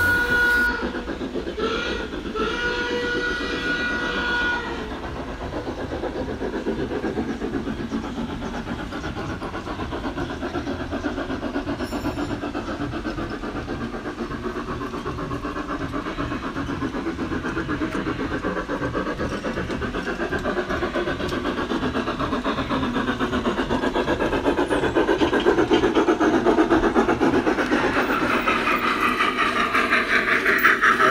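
Large-scale (F-scale) model steam locomotive running on garden track. Its whistle sounds twice in the first few seconds. Then it runs with a fast, even beat of chuffing and wheel clatter that grows louder as it nears.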